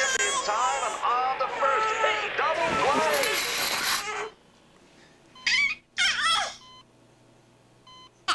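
Baseball play-by-play commentary over crowd noise, the crowd swelling into a cheer before everything cuts off about four seconds in. After a pause come two short high-pitched cries.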